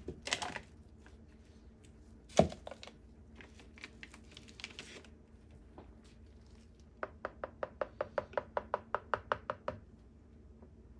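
Art tools being handled on a work table: a sharp knock about two seconds in, scattered light clicks, then an even run of quick clicks, about five a second, over the last three seconds.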